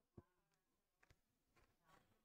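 Near silence: faint room tone with a low buzz, and one soft click shortly after the start.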